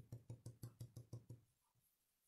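A blending brush tapped quickly and repeatedly against cardstock to dab ink on, about six taps a second, stopping about one and a half seconds in.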